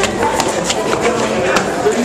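Footsteps tapping down a stairway, a quick series of light knocks, under a mix of voices and music.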